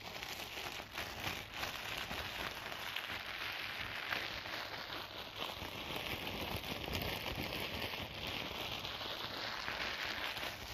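Clear plastic wrapping crumpled and crinkled in the hands: a dense, continuous crackling made of many tiny snaps.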